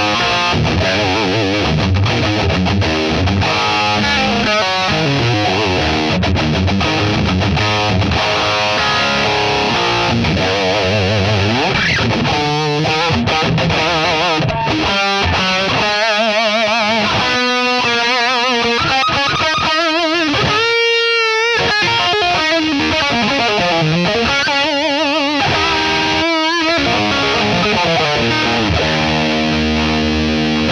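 Distorted electric guitar played loud through an Orange OR30 valve head into a 2x12 cabinet loaded with Vintage 30 speakers. The volume is high and the gain is backed off to about two thirds. The playing mixes chords, riffs and single-note lines with string bends.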